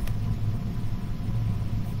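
A steady low rumble with a hum in it, running on unchanged in a pause in speech.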